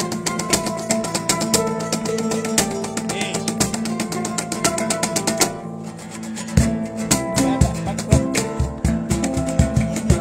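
Street-band acoustic music: an acoustic guitar strummed over held notes. About six and a half seconds in, a cajón comes in with repeated deep thumps, about three or four a second.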